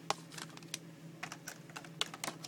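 Clear plastic packaging being handled, giving a string of light, sharp clicks and crinkles at uneven spacing.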